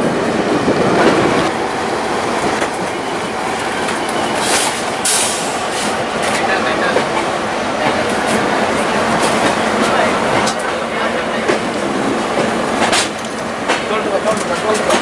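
Indian Railways passenger coach pulling out of the station, heard from its open door: steady running noise with wheels clicking irregularly over rail joints and points, and a brief high hiss about five seconds in.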